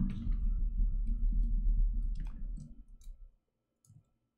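Computer keyboard keys clicking as text is typed and edited, over a low rumble that fades out about three seconds in.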